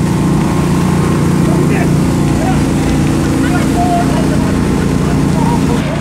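An engine running steadily close by, a constant low hum with a few held tones that does not change, with faint shouting voices in the distance.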